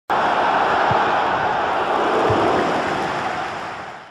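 Logo-intro sound effect: a loud, steady rushing noise that starts suddenly, with two low thuds about one and two and a half seconds in, fading out near the end.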